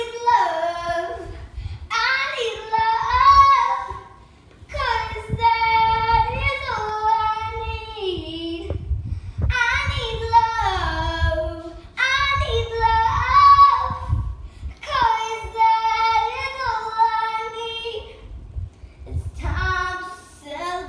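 A young girl singing unaccompanied, in phrases of a few seconds with short breaks between them.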